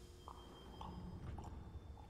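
Faint sounds of a man eating soup: a few soft, short sounds about half a second apart.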